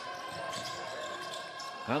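Basketball court sound during live play in an arena: a basketball being dribbled on the hardwood floor over a steady background of hall noise.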